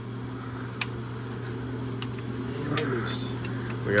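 A steady low machine hum, with a few faint clicks of wrenches on the transmission cooler hard-line fittings as they are worked loose.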